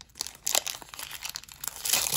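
Foil wrapper of a Pokémon booster pack crinkling and crackling as it is handled and opened, in an irregular run of sharp crackles.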